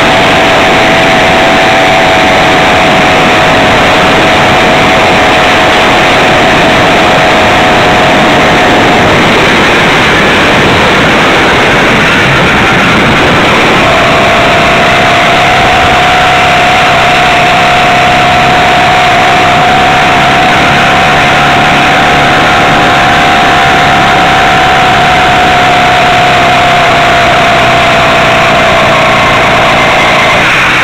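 Small two-stroke engine of a motorized bicycle running under way, buried in heavy wind noise on the microphone. Its steady note drops away about nine seconds in and comes back a few seconds later, sagging slightly in pitch near the end.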